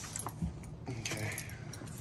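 Light clinks and rattles of small metal parts and tools being handled, with a few sharp ticks scattered through.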